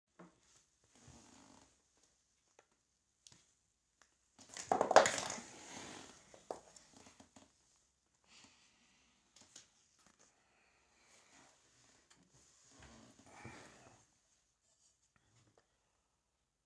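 Rustling and knocking of a phone being handled close to its microphone, loudest in a crackling rustle about five seconds in, with scattered single clicks and softer rustles around it.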